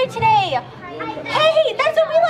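High-pitched voices without clear words: a falling squeal about a quarter second in, a brief lull, then more high, quick voice sounds near the end.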